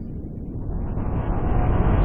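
Intro sound effect for an animated logo: a low rumbling whoosh that swells steadily louder and brighter, building up to a hit right at the end.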